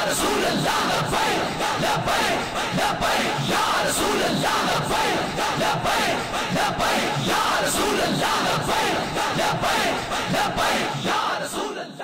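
A large crowd of men shouting slogans together, loud and sustained, dying away near the end.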